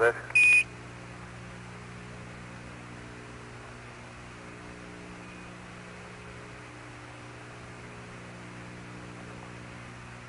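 A short Quindar beep about half a second in, the tone that keys off Mission Control's radio transmission. It is followed by the steady hiss and low hum of the Apollo air-to-ground radio link.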